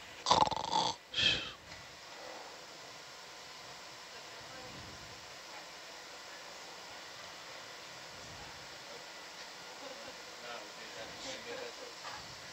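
Two short voice sounds in the first two seconds, then steady background hiss with faint murmured voices near the end.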